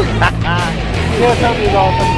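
People's voices and chatter over background music, with a steady low hum underneath.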